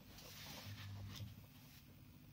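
Homemade magnetic stirrer starting up as its speed knob is turned: a faint hiss with a low hum while the magnet pair spins up, with a small click about a second in.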